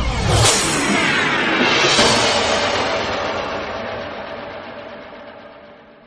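Synthesized intro ident sound: whooshing sweeps with a cluster of falling tones, two sharp rising swooshes about half a second and two seconds in, then a long fade-out.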